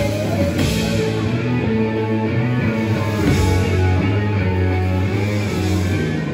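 Rock band playing live, with distorted electric guitars, bass guitar and drum kit, loud and steady.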